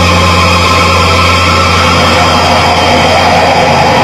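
Death metal band playing live, with distorted electric guitars and bass holding one low note that rings on as a loud steady drone, and fainter higher tones sounding over it.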